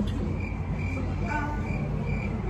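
A high-pitched chirp repeating evenly, about three short chirps a second, over a low background rumble.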